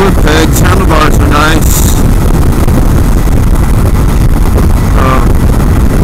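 Loud, steady wind buffeting on the microphone of a 2016 KLR650 dual-sport motorcycle at freeway speed, with the bike's single-cylinder engine running under it.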